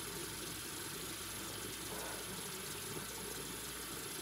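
A steady low hum and rumble with no change in level throughout.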